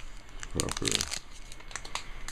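Clear plastic wrapper around a bar of soap crinkling as it is handled, in a run of small crackles.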